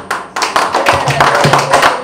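Audience applauding, the clapping starting about a third of a second in, right after the speech ends, and going on steadily.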